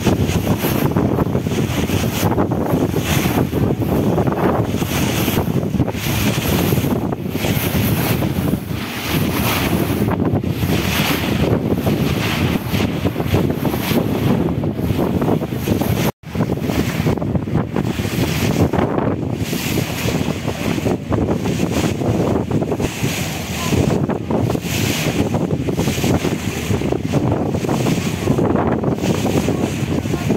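Wind buffeting the microphone from a moving boat, over the steady rush of sea water. The sound drops out for an instant about halfway through.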